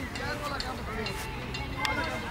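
Faint chatter of children's voices across a playing field, with one short sharp click near the end.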